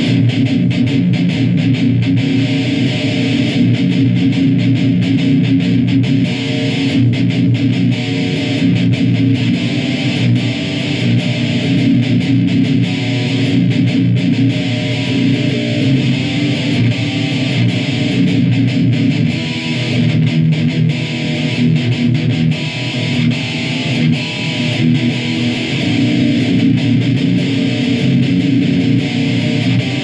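ESP LTD EC-258 eight-string electric guitar played heavy and distorted through a Crate amp and Mesa Boogie cabinet, strumming low chords and riffs without a break.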